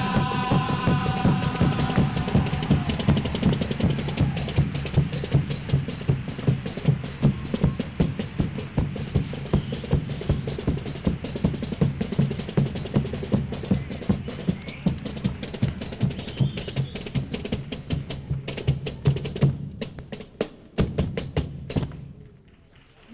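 A chirigota's carnival band playing an instrumental passage: a bass drum and snare drum beating a fast, steady rhythm over strummed guitars. The music breaks off near the end.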